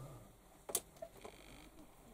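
A single sharp click of a light switch, about a third of the way in, switching off the room lights, with a smaller click just after and a faint brief high tone.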